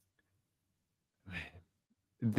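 Near silence, broken by a single short breath from a person at the microphone about a second and a half in.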